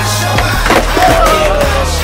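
A skateboard clacking against a concrete sidewalk a couple of times about half a second in, under music with a steady bass line.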